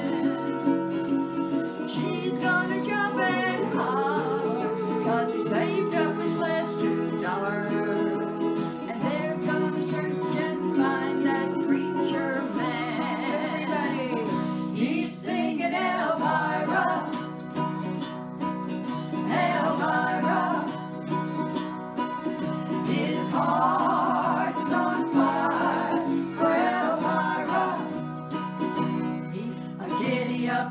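Women singing with acoustic guitar accompaniment. Held notes with a wavering pitch come in several times over steady guitar chords.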